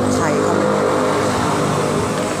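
Busy restaurant background: several people talking over a steady low rumble.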